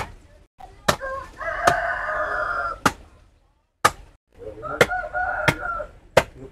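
Machete chopping a wooden stick, seven sharp strikes about a second apart. A rooster crows twice in the background, once about a second in and again near the end.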